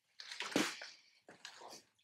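Two soft rustles of a person moving in a martial-arts uniform on a foam mat, the first about a fifth of a second in and a fainter one near the end.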